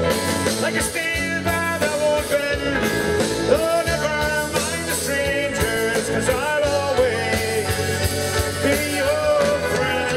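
A live rock band playing an instrumental passage, with electric guitar lines over strummed acoustic guitar and drums, heard as a loud steady mix from out in the crowd.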